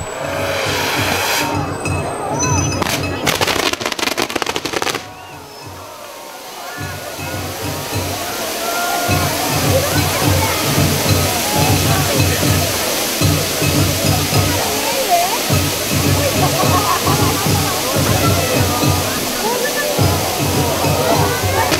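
Set-piece fountain fireworks hissing and spraying sparks, a dense rushing like a waterfall, with loud crackling in the first few seconds. Festival hayashi drums beat steadily underneath.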